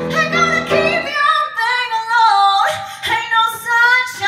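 A woman singing a sliding, ornamented vocal line with piano accompaniment; about a second in the piano drops out and the voice carries on alone.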